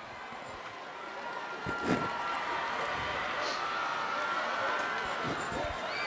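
Stadium crowd noise swelling about a second in and holding steady, with faint distant voices and a single brief knock.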